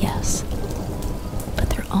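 Steady rain with a continuous low rumble of thunder, a background ambience bed.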